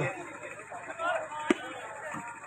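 A single sharp slap about one and a half seconds in: a volleyball struck hard by hand at the net, over faint crowd voices.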